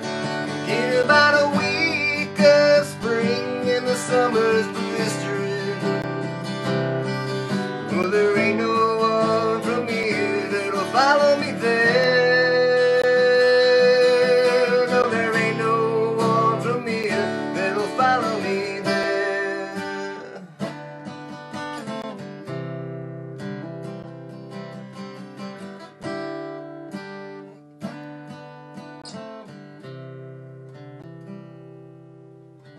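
Acoustic guitar strummed, with a man singing over it for about the first twenty seconds. Then the guitar plays on alone, softer.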